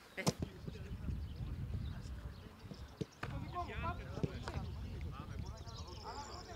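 A football being kicked on a grass pitch during a passing drill: sharp thuds of boot on ball, one a fraction of a second in and another about three seconds in, over a low outdoor rumble.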